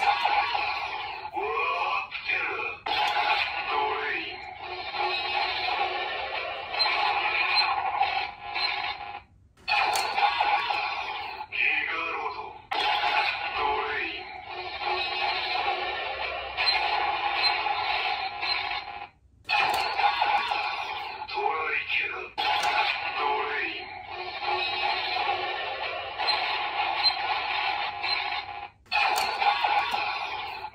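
Dread Driver transformation-belt toy sounds: a synthesized standby music loop with an electronic announcer voice, played once per Ride Chemy card. Three sequences of about ten seconds each, cut apart by brief silences.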